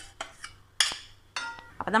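A metal spoon and steel vessels clink and scrape against each other as a liquid is scraped out of a steel jug into a metal pan. There are a few sharp clinks, the loudest a little under a second in, and one about one and a half seconds in rings briefly.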